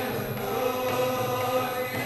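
Devotional kirtan singing: a long chanted note held steady over a sustained electronic keyboard chord.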